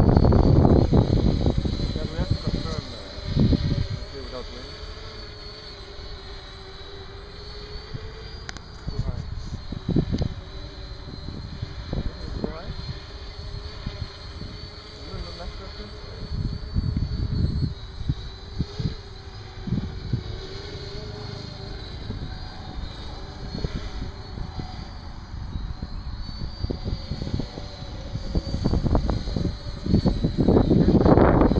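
A hovering quadrotor's motors and propellers make a steady tone that wavers slightly in pitch as it holds altitude. Gusts of wind buffet the microphone with low rumbles, heaviest at the start and near the end.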